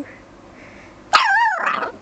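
A papillon 'singing': about a second in, one short, high-pitched call whose pitch wavers up and down, lasting under a second.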